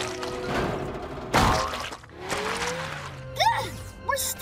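Cartoon soundtrack: background music with sound effects, including a sharp crash about a second and a half in, then a slow rising glide and brief sliding-pitch sounds near the end.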